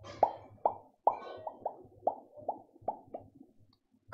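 A quick series of about ten short, hollow pops, irregularly spaced at two to three a second.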